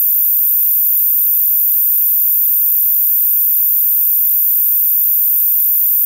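Steady electrical hum and buzz, a low tone with a ladder of even overtones, under a constant high-pitched whine; it does not change through the pause.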